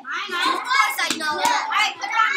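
Children's voices talking, with a few sharp clicks about a second in.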